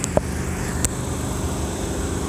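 Steady low rumble of a vehicle engine idling, with two brief clicks about a quarter second and just under a second in.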